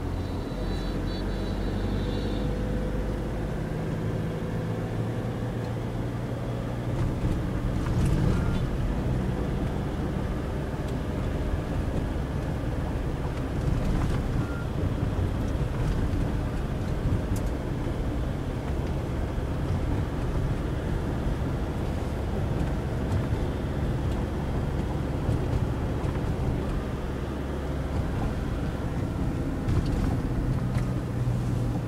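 Steady engine and road noise of a car driving in city traffic, heard from inside the cabin.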